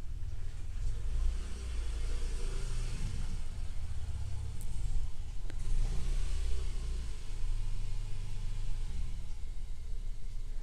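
Handheld electric blower running steadily, blowing air to dry leftover water from inside an opened LED TV.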